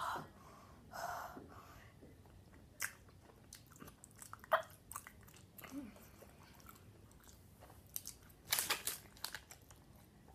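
Close-up chewing of a sour bubble gum ball with the mouth open: irregular wet smacks and small clicks, with a louder burst of mouth noise about eight and a half seconds in.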